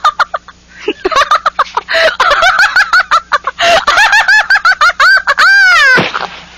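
A woman's hysterical, uncontrollable laughter: a fast run of high pitched whoops that starts about a second in, builds, and ends in a long shriek that rises and falls, the laughter of someone overcome by the lethal joke.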